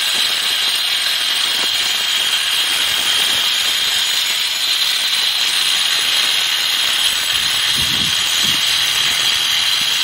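Angle grinder with a 4.5-inch diamond blade cutting a groove about three quarters of an inch deep down the face of a concrete block wall. It runs loud and steady under load, with a high whine.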